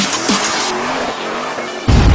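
Produced intro soundtrack: a car sound effect with tyre squeal over electronic music with a fast, punchy beat, then a sudden deep boom just before the end.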